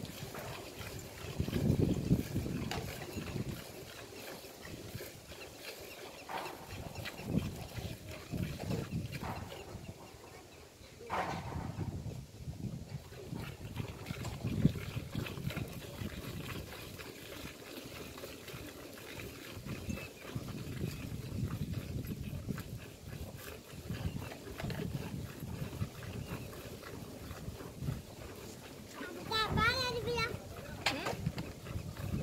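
A cow being hand-milked: milk squirting in repeated short strokes into a steel pail, with faint voices in the background.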